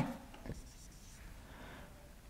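Faint marker writing on a whiteboard: a soft rubbing stroke, with a light tap about half a second in.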